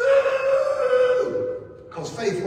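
A man's loud, drawn-out high-pitched vocal exclamation, a held holler-like note that starts suddenly, lasts about a second and a half and falls away near the end.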